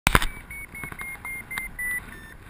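Paragliding variometer beeping at a high pitch, about four short beeps a second, the last beep held a little longer: the climb tone that signals the glider is rising in lift. A loud knock at the very start.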